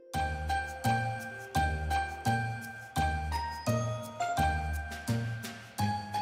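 Festive Christmas-style music: jingling sleigh bells on an even beat, about three strikes every two seconds, over a bass line and a short melody.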